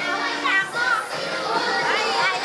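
A crowd of young children chattering and calling out over one another, with music playing underneath.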